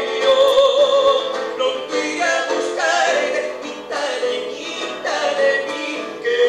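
A man singing a slow song live into a microphone, holding long wavering notes, accompanied by an acoustic guitar.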